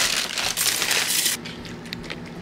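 Dry cereal poured into a ceramic bowl, rattling loudly for about a second and a half. It is followed by a softer pour of milk near the end.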